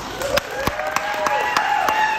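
Audience applauding, with a whoop of cheering that rises in pitch and then holds over the clapping.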